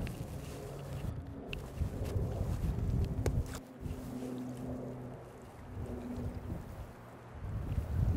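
Wind rumbling on the microphone over the steady sound of the river, with a few faint clicks.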